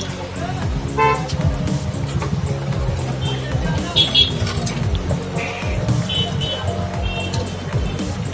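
Street traffic: vehicle horns tooting several times in short blasts over the steady rumble of passing vehicles.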